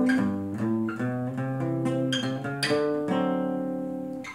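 Cutaway acoustic guitar played by hand: a short fill of picked notes and strummed chords that passes into a G chord, the last notes ringing out and fading near the end.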